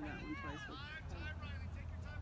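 Several high-pitched voices calling out at a distance, with a low steady rumble underneath.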